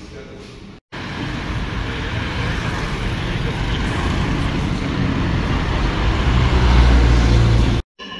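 Road traffic on a city boulevard: a steady rush of passing vehicles that grows louder, with a heavy low engine rumble swelling near the end. It starts abruptly about a second in and cuts off just before the end.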